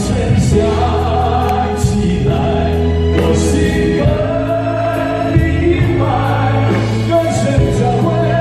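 Live band playing a pop song with a male singer's voice over it, the drum kit marking it with several cymbal crashes.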